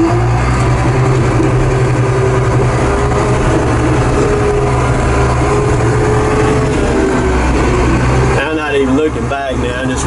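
Crawler bulldozer's diesel engine running steadily under load, heard from inside the cab, as the machine is driven onto a trailer, with a steady tone over the engine drone. The engine sound drops off about eight and a half seconds in.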